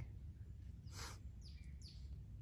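A bird calling: a brief high chirp about a second in, then a couple of short high calls near the end, over a faint low rumble of outdoor background.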